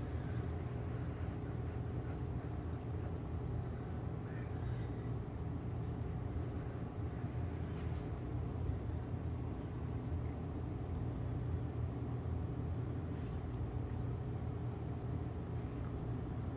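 Steady low room hum, with a few faint short clicks here and there.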